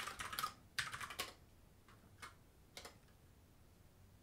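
Computer keyboard typing, faint: two quick runs of keystrokes in the first second and a half, then a few single key presses.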